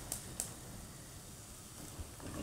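Egg bhurji with onions and green pepper frying gently in a pan: a couple of small crackles in the first half second, then a faint steady sizzle.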